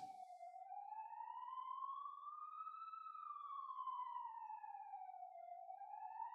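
A faint, single sustained tone with fainter overtones, gliding slowly up for about three seconds and back down, then starting to rise again near the end.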